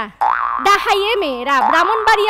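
A woman's voice speaking animatedly into a microphone, the pitch swinging up and down in exaggerated glides; it starts after a brief pause at the very beginning.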